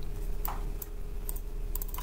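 A few scattered light clicks from working a computer's mouse and keyboard, over a faint steady hum.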